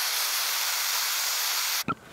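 Handheld gas torch flame hissing steadily as it melts a padlock; the hiss cuts off suddenly near the end.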